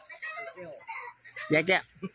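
Mostly speech: a short spoken phrase about one and a half seconds in, preceded by faint, scattered background sounds.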